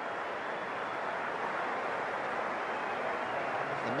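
Large stadium crowd applauding and cheering, a steady, even wash of noise.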